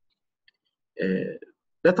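After a silent pause, a short voiced sound from the male lecturer about a second in, lasting about half a second at a steady pitch, like a hesitation sound or a small burp.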